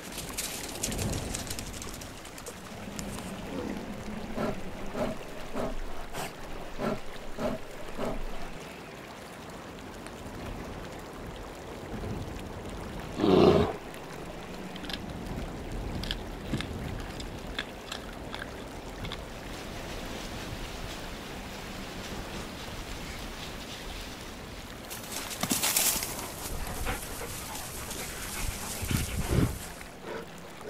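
Gray wolves calling: scattered short calls over the first several seconds, then one loud call about thirteen seconds in. A burst of rushing noise comes near the end.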